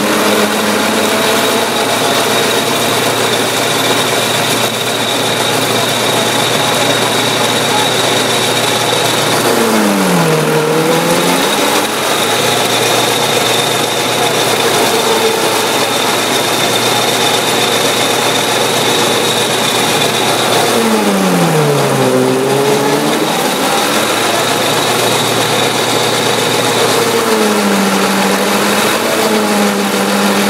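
Tractor-driven fodder chopper running flat out on green maize: a steady high whine from the cutter head over the tractor engine's drone. Three times, about a third and two-thirds of the way through and again near the end, the engine pitch sags and climbs back as the fodder fed in loads the machine down.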